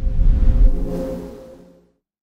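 Channel logo sting: a swelling low rumble with a steady tone held on top, fading out shortly before the end.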